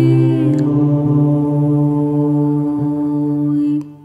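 Closing held chord of an Orthodox church chant, a sustained note over a steady low drone. The top note slips slightly lower about half a second in, and the chord cuts off sharply shortly before the end, leaving a brief fading echo.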